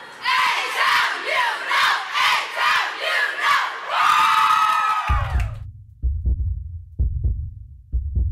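A group of teenage girls shouting a chant in unison, short rhythmic shouts about two a second, ending in one long held shout about five seconds in. Deep, low thuds follow to the end.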